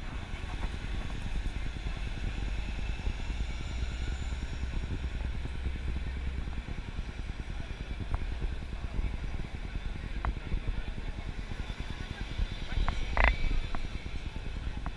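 Busy city street ambience: a steady rumble of traffic under the chatter of a passing crowd, with a few short knocks and one louder short sound near the end.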